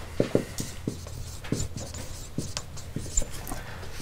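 Marker writing on a whiteboard: a run of short, irregular scratches and taps as the strokes of words are drawn.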